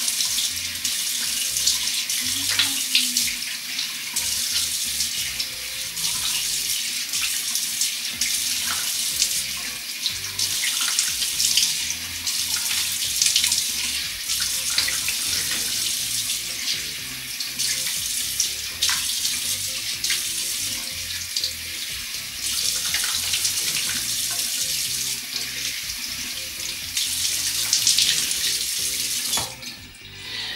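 Bathroom sink tap running steadily into the basin, with hands dipping into the stream now and then, until it is shut off near the end.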